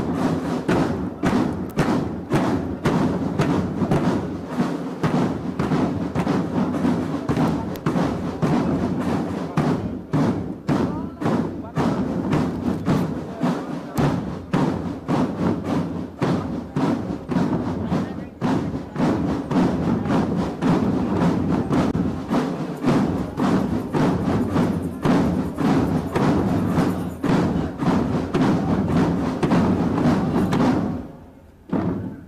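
Military academy cadet drum band playing marching drums: a dense, fast, unbroken roll of strokes from many sticks striking together in rhythm.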